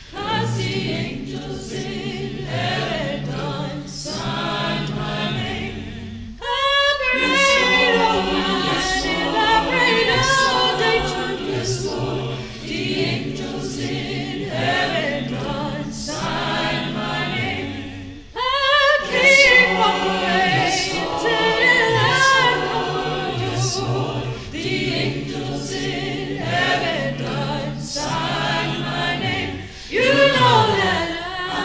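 Mixed-voice student choir singing a cappella, made of individually recorded vocal parts blended together. Short breaks between phrases come about six and eighteen seconds in.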